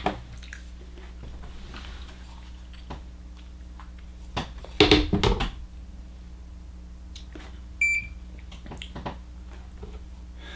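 A Dye DM13 paintball marker set down on a digital scale, with a quick cluster of knocks about halfway through, then a single short electronic beep from the scale a few seconds later. A faint steady low hum runs underneath.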